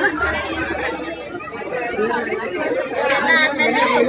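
Several people talking at once: overlapping chatter with no single clear speaker.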